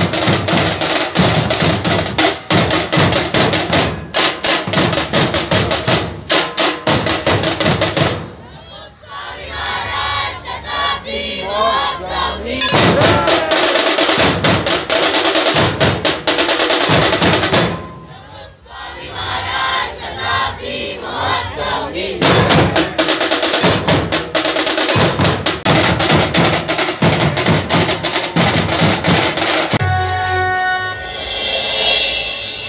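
A large ensemble of barrel drums beaten with sticks, playing a loud, fast rhythm together. Twice the drumming drops away for a moment, and shouting voices come through before the drums come back in.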